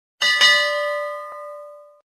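Bell sound effect for the subscribe button's notification-bell animation. It is struck twice in quick succession about a quarter of a second in, then rings with several clear tones and fades away.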